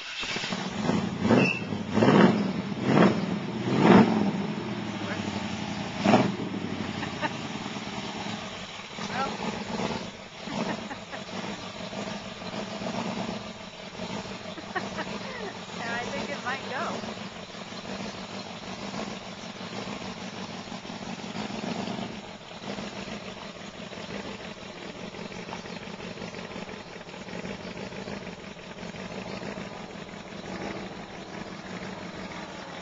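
1964 Chevrolet pickup's engine starting, revved in several quick blips over the first six seconds, then settling into a steady idle.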